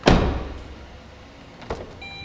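A car door, the rear door of a 2007 Saturn Ion, slammed shut: one loud thump at the start that dies away over about half a second. A lighter click near the end, as the front door is opened.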